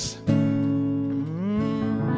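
Acoustic guitar strummed as the intro to a song: after a brief gap, a chord is struck about a quarter second in and left ringing, shifting to another chord near the middle.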